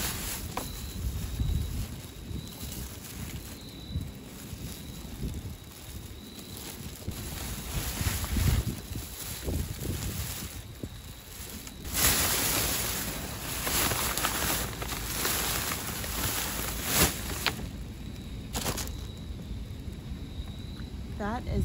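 Plastic trash bags rustling and crinkling as gloved hands dig through them, with low rumbling and scattered clicks from handling. The loudest spell of crinkling starts about twelve seconds in and lasts about three seconds.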